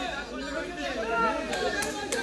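Crowd chatter: many voices talking at once, with no single speaker standing out.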